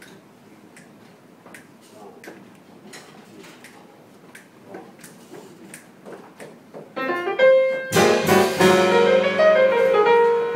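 Live jazz: a few quiet seconds of room murmur and faint clicks, then piano notes come in about seven seconds in, and a second later the full quartet of piano, saxophone, double bass and drums starts playing loudly.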